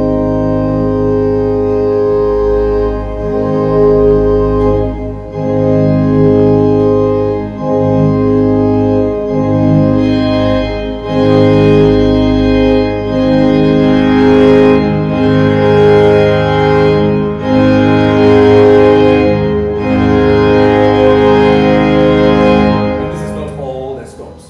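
A three-manual Olive organ playing full sustained chords with several voices layered together over a deep pedal bass. The chords change every second or two, the deepest bass drops out a little past halfway, and the playing stops just before the end.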